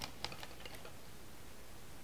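Quiet room tone, a steady faint hiss, with a few faint light clicks in the first half second.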